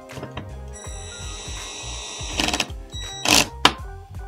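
Cordless drill on a low speed setting, driving a small M3 screw with a hex bit: the motor whines steadily for about a second and a half, then two sharp knocks come near the end. Background music plays underneath.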